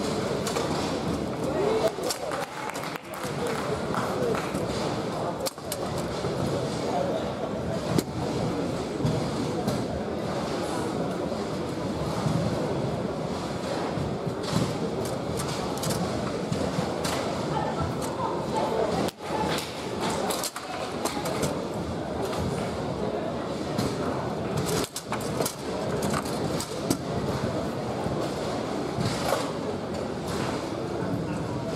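Foosball being played on a Bonzini table: scattered sharp knocks and clacks of the ball and rod figures every few seconds, over steady indistinct chatter of people in a large hall.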